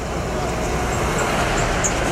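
A Tata box truck driving past close by: a steady rush of engine and tyre noise on the road that grows a little louder about half a second in.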